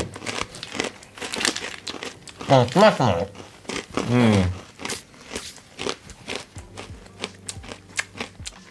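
Wasabi peas being crunched and chewed: a quick, irregular string of crisp cracks, with a short voiced 'mm' partway through.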